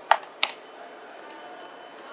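Two light knocks about a third of a second apart as small cardboard boxes are handled and set down on a wooden counter.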